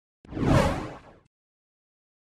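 A single whoosh sound effect with a deep impact, part of an animated logo intro. It starts sharply about a quarter second in and dies away after about a second.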